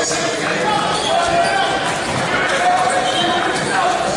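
Basketball game sound in an echoing gym: players and spectators chattering, with occasional basketball bounces on the court floor.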